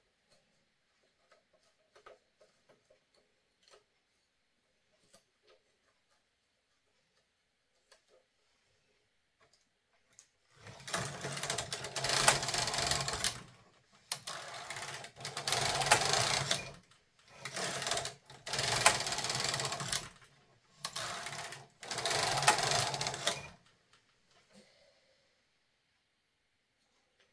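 Brother KH-230 chunky knitting machine: the carriage is pushed back and forth across the needle bed, knitting a row with each pass, in several rasping strokes of one to three seconds each with short pauses between. Before that, only a few faint clicks as hands work at the machine.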